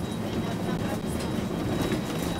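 Inside a moving city bus: steady engine and road rumble with light rattling as the bus drives along a street.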